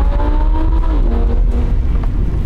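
Lamborghini sports car engine accelerating, heard from inside the open-top cabin. Its pitch rises steadily, drops at an upshift about a second in, then runs on at lower revs.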